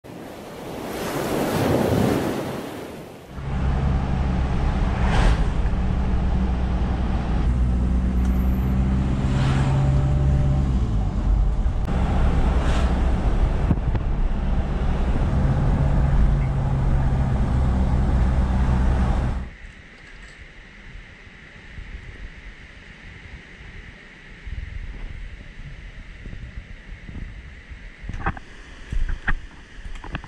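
A swelling rush of noise for the first few seconds, then a steady low hum of a car's engine and road noise heard from inside the cabin while driving, which cuts off abruptly about two-thirds of the way in. After that, quiet outdoor ambience with a faint steady hiss and a few light clicks near the end.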